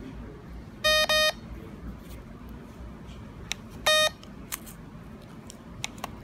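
SilverStone F1 Monaco radar detector beeping as its menu is stepped through: a quick double beep about a second in and a single beep about four seconds in, with a few faint clicks.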